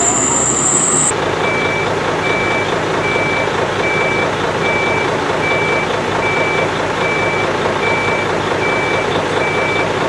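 A heavy truck's reversing alarm, plausibly the fire engine's, beeping steadily at one pitch about three times every two seconds over its running diesel engine. The beeping starts about a second in, just as a high whine cuts off.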